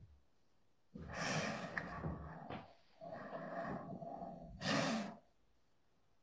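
Breathy non-speech vocal sounds and exhalations from a person, in two stretches of a second or more, the loudest a short burst of breath just before five seconds in.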